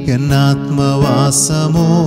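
A man singing held notes with a wavering vibrato over a strummed acoustic guitar.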